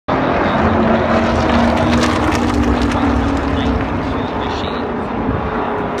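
Race car engine at full speed passing the grandstand of an oval track, its note falling slowly and easing a little as the car moves away.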